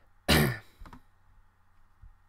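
A man's single short throat-clearing cough, sudden and loud, dropping in pitch as it dies away.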